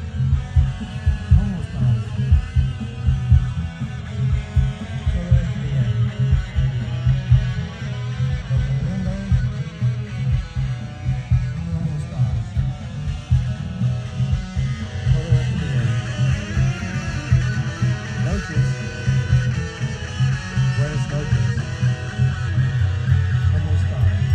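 Guitar-driven music with a heavy, pulsing low end, growing brighter in the upper range about two-thirds of the way through.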